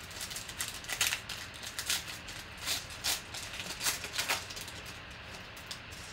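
Foil trading-card pack wrapper being torn open and crinkled by hand: a run of irregular crackles that dies down about four and a half seconds in.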